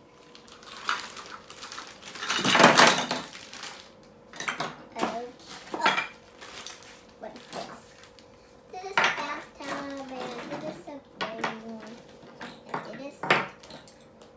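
Small plastic doll-house furniture pieces clattering against one another and on a tabletop as they come out of a plastic bag. A loud rustle of the bag about two and a half seconds in, then several sharp separate clacks.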